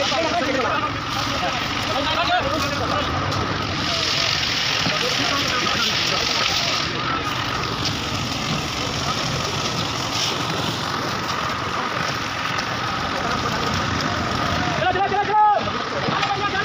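An engine running steadily, with a constant hum and a thin steady whine, under background voices that rise briefly near the end.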